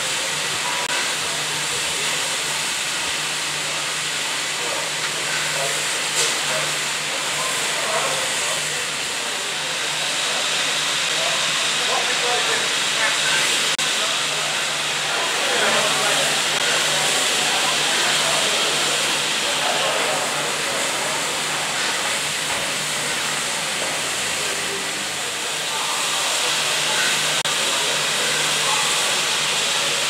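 LNER Class A4 Pacific steam locomotive 60019 'Bittern' standing at rest, its steam hissing steadily, with a low steady hum beneath.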